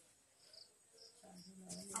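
Faint insect chirping: a short, high chirp repeated about two to three times a second over quiet room tone, with a faint voice starting about a second in.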